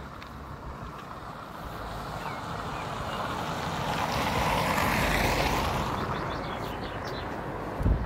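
A vehicle passing by, its road noise swelling to a peak about midway and fading away, with a short thump just before the end.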